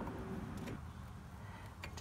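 Low background hum with two faint light ticks, the second near the end, from a small screwdriver turning the plastic oil-drain valve closed.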